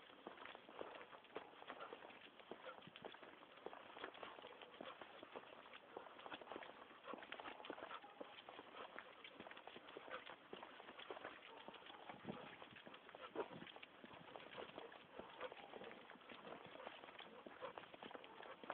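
Faint footsteps of a person and a large dog walking on paving stones: a steady run of small clicks and taps.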